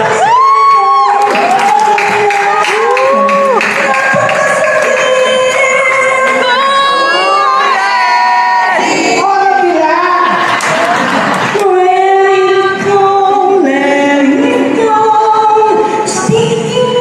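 A man singing live into a microphone in a high voice with long swooping notes, with the audience cheering and shouting over it in bursts.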